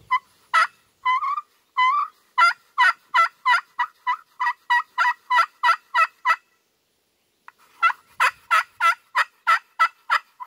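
Friction pot turkey call worked with a striker, yelping: a few slower single notes, then a fast run of yelps about four a second, a pause of about a second, and a second fast run of yelps.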